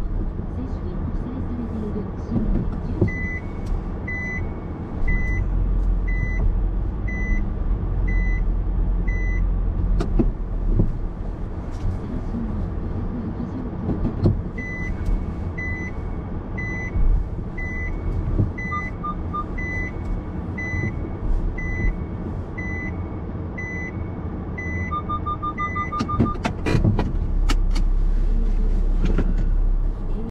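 Repeated electronic beeps at a steady pace of about one and a half a second, over the low rumble of a car cabin, typical of a car's reverse-gear warning while parking. Twice a quicker run of lower beeps comes in, like a parking sensor, and a few sharp clicks sound near the end.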